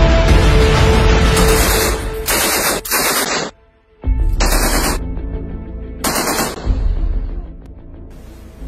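Music at first, then from about two seconds in, several bursts of machine-gun fire, each about half a second long, with a brief near silence between the second and third bursts.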